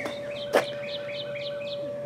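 A bird chirping a quick run of short, high notes, over a faint steady tone. A single brief click comes about half a second in.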